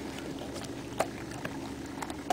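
Basset hound's nose and muzzle nudging against the camera, close to the microphone: a rubbing noise with a sharp knock about a second in, over a steady low hum.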